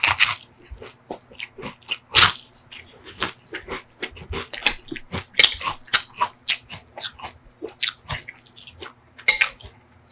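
Close-up crunching and chewing of a crisp sugar cone filled with soft vanilla ice cream: a dense run of sharp crackles, loudest about two seconds in and near the end.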